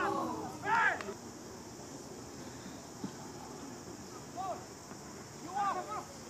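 Voices shouting on an open football pitch: two loud calls right at the start, a fainter one about four and a half seconds in and another near the end, over a steady outdoor hiss. A single short knock comes about three seconds in.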